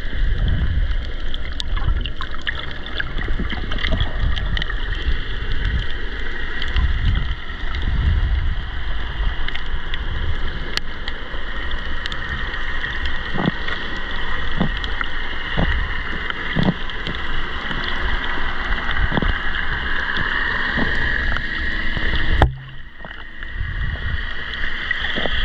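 Underwater sound picked up by a GoPro in its housing while snorkelling over a reef: a continuous muffled rush and low surging rumble of water, with scattered faint clicks and a steady high hum. The sound drops away suddenly for a moment near the end.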